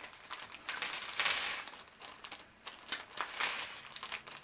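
Small plastic Lego accessory pieces clicking and clattering onto a hard tabletop as a bag of them is emptied, with a brief rustle of the plastic bag about a second in.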